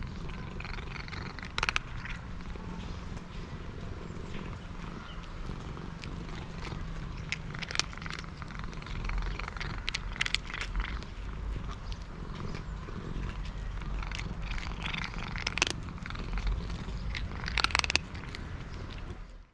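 Domestic cat purring steadily while eating, with dry kibble crunching in sharp bursts over the low purr.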